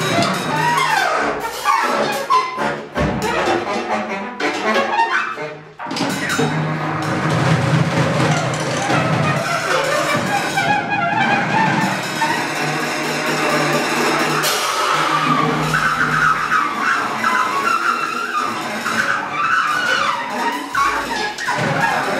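Large free-jazz ensemble of saxophones, clarinets, trumpet, trombone and tuba playing together over two drummers, with a baritone saxophone and a trumpet among the horns. The level dips briefly about six seconds in, then the full band plays on.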